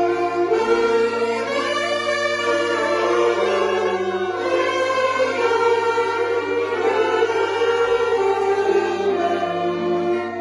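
A large ensemble of young saxophonists, mostly on alto saxophones, playing together in harmony, holding sustained notes that change every second or two.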